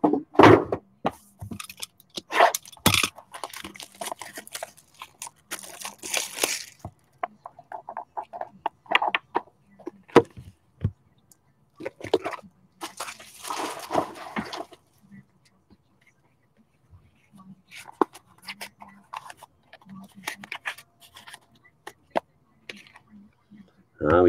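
Hands handling and opening small trading-card boxes: scattered taps and knocks of cardboard and plastic packaging, with a few longer stretches of rustling and scraping, the longest around six and fourteen seconds in.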